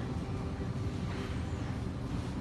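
A steady low rumble of background noise in a large store, with nothing distinct standing out.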